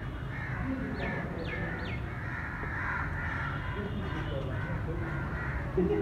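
Crows cawing among other birds calling, with three short, quick falling calls between about one and two seconds in, over a steady low background.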